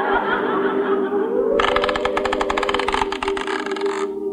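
Orchestral bridge music holding low sustained chords. About one and a half seconds in, a fast, even rattling clatter starts over it: a radio sound effect of an old windmill's sails turning.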